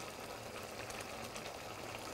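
Tomato-based seafood stew broth simmering in an enameled cast-iron pot on the stove, a faint, steady bubbling crackle.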